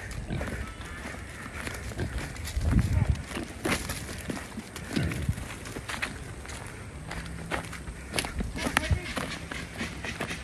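Hurried footsteps on dry leaf litter and fallen sticks, with irregular rustles and twig snaps and a few heavier bumps about three seconds in.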